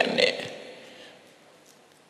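A man's sermon voice through a microphone breaks off a moment in. Its sound trails away over about a second and a half into faint background hiss.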